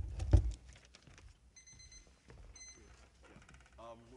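Two thumps on the podium microphone as papers are handled, then a digital timer beeping: a run of high electronic beeps for about a second, starting about a second and a half in.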